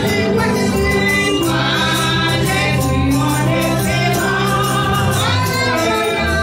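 Live Haitian Creole gospel praise singing: a group of voices over a band with a steady beat, amplified through microphones.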